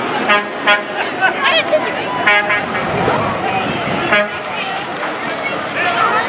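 A vehicle horn tooted in four short blasts, the third a little longer, over crowd chatter and passing parade traffic.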